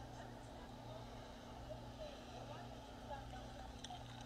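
Low, steady hum of an idling car engine, with faint indistinct voices.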